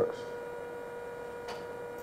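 Low, steady electrical hum with a constant mid-pitched tone, and a faint tick about a second and a half in.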